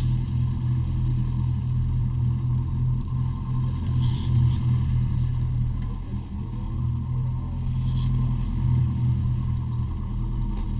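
Sportfishing boat's engines running with a steady low drone while the boat is under way.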